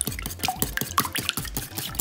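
Wire whisk beating eggs and half-and-half in a ceramic bowl: a rapid, irregular run of wet clicks and splashes as the wires stir the liquid and tap the bowl.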